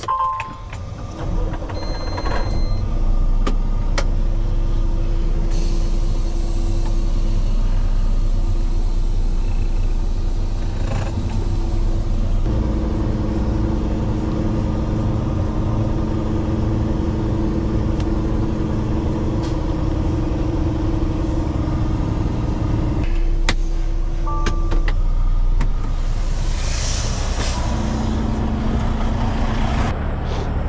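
Peterbilt semi-truck's diesel engine running as the tractor moves slowly across a gravel yard, its pitch changing about twelve seconds in and again near twenty-three seconds. A hiss comes near the end.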